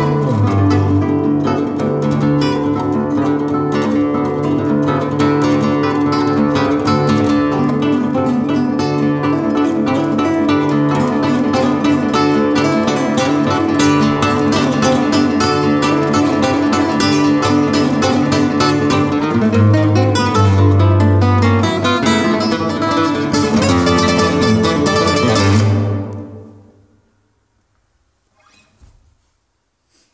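Two nylon-string classical guitars playing a duo piece, ending about 26 seconds in as the last notes die away into near silence. A few faint small noises follow.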